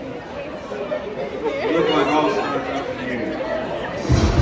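Crowd chatter in a large hall: many people talking at once, with no music playing.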